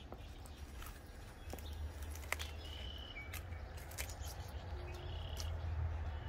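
Leafy greens being picked and handled by gloved hands in a plastic vertical planter: scattered small snaps and leaf rustles, the sharpest about two seconds in. Under them runs a low steady rumble, with a few faint short bird chirps.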